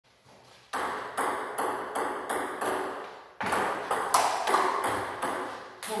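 Table tennis rally: a ping-pong ball clicking off the paddles and the table roughly every 0.4 s, each hit echoing in a large hall. There is a short break in the hits about halfway through.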